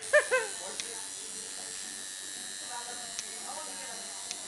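Coil tattoo machine switching on right at the start and buzzing steadily as it works ink into skin. A short burst of voice comes just after it starts, and faint talk sits under the buzz later on.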